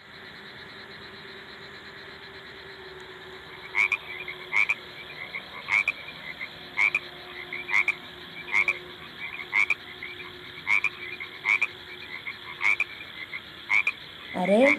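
Frogs croaking: short, regular croaks about once a second, starting about four seconds in over a faint steady background hiss.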